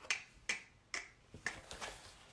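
Crisp clicks and crackles from a stiff sheet of alphabet stickers being bent and handled, about five sharp snaps, roughly two a second.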